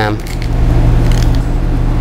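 Knife cutting broccoli florets off the stem on a wooden cutting board: a steady low rumble with a few faint clicks about a second in.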